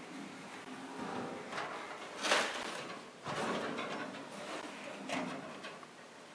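Deep bottom drawer of a Husky ball-bearing tool cabinet sliding on its slide rails, with a sharp knock just over two seconds in, the loudest sound, and a smaller knock near the end as the drawer reaches its stops.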